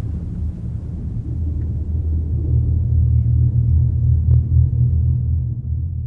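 Deep, steady low rumble from the film's soundtrack, a dark drone with almost nothing higher above it, swelling in the middle and easing near the end.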